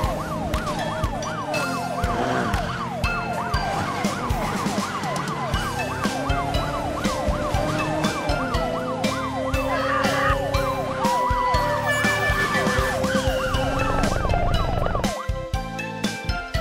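Police car siren in a fast, repeated rising-and-falling wail, about three sweeps a second, over background music; the siren stops near the end.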